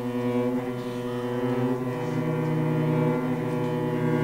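Cellos bowing long, sustained low notes in a slow chord, with a new low note coming in about halfway through.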